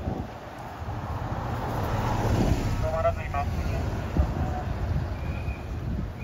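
A diesel city bus drives past close by, its engine and tyre noise swelling to a peak about two to three seconds in, then easing as it moves away.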